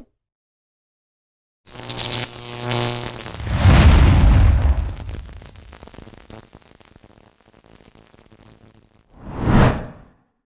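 Logo-reveal sound effect: a sudden hit with a ringing tone, then a deep boom that fades away over several seconds, and a short whoosh that swells and cuts off near the end.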